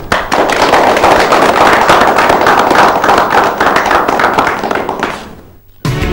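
A group of people applauding, a dense run of hand claps that fades away shortly before the end.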